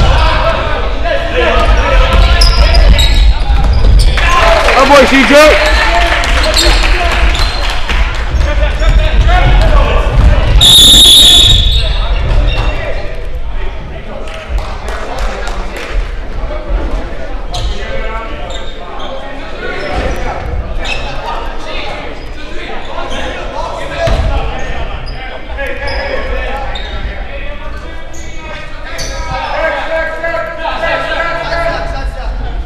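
Basketball game in a gym: a ball being dribbled on the hardwood court and players' and spectators' voices echoing around the hall. About eleven seconds in a referee's whistle blows once for about a second, stopping play, and the court sound quietens after it.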